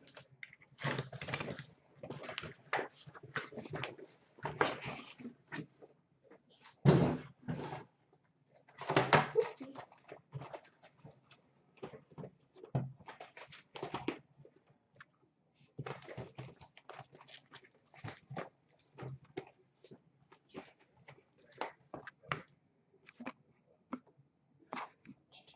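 Cardboard case being opened and shrink-wrapped hobby boxes lifted out and stacked: irregular rustling, scraping and light knocks of cardboard boxes set down on a glass counter.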